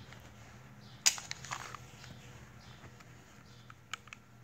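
A sharp click about a second in, then a few lighter clicks and rustles, from the takedown button and lever of a Beretta 9000S polymer-frame pistol being worked by hand while field-stripping it. A couple of faint clicks come near the end.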